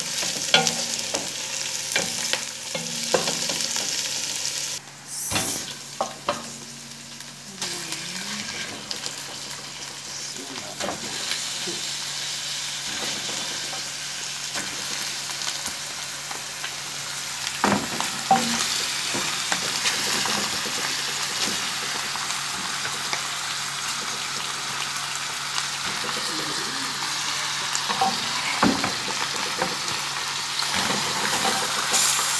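Sliced red onions sizzling in oil in a nonstick pan, stirred with a wooden spoon that knocks and scrapes against the pan. The sizzle drops for a few seconds about five seconds in, and after mutton pieces are added partway through it runs on, steady and hissing.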